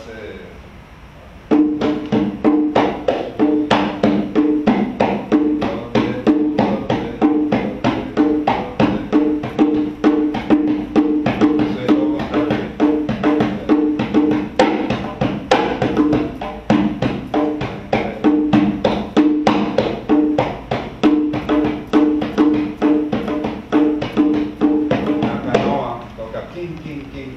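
Small Dominican hand drum played with bare hands: a fast, even rhythm of strokes at two pitches, starting about a second and a half in. It is a demonstration of the small drum's part, which puts a two-against-three polyrhythm over the basic beat.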